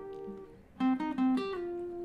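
Acoustic guitar with a capo on the first fret, single notes plucked one after another in a riff. The earlier notes ring out and fade to a brief lull about half a second in, then a new run of notes starts.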